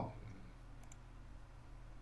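A single faint computer mouse click a little under a second in, over low steady room hum.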